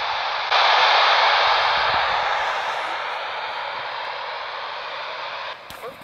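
Steady static hiss from a handheld airband receiver's speaker on the Warsaw VOLMET frequency, with no voice in it. The hiss gets louder about half a second in, slowly fades, and drops away sharply near the end.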